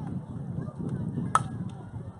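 A softball bat striking a pitched softball: one sharp crack with a brief metallic ring, about a second and a half in, over background chatter of spectators.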